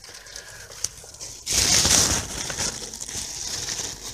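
Rustling and rubbing close to the microphone as the camera is handled and moved about, suddenly loud about a second and a half in, with small clicks and knocks mixed in.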